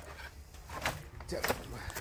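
A man speaking briefly in Hindi, with a couple of short knocks among the words.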